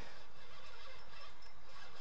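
Steady, even hiss of a lit portable propane radiant heater, with no distinct events.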